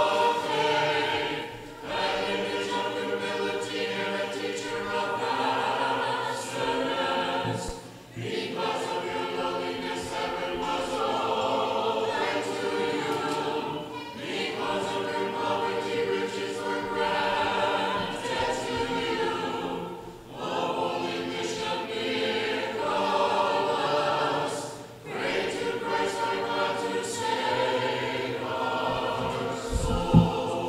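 Church choir singing an unaccompanied Orthodox liturgical hymn in several voices. The singing moves in phrases, with short breaks between them every five or six seconds.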